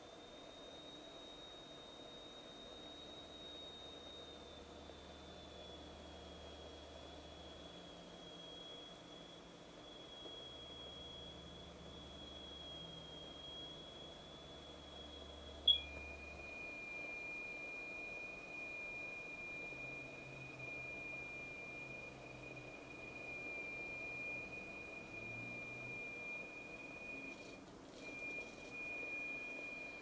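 A faint, steady high pure tone, the test tone driving the vibration in a cymatics demonstration. About halfway through it steps down to a lower steady pitch with a sharp click at the change.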